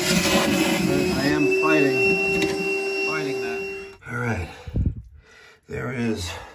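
Milwaukee M18 cordless wet/dry vacuum running with a steady whine as its hose sucks the water out of a toilet tank. The sound stops about four seconds in.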